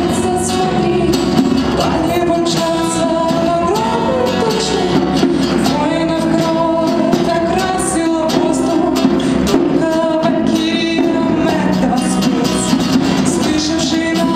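Live band music: a woman singing a wavering melody over strummed acoustic guitar and djembe hand drum.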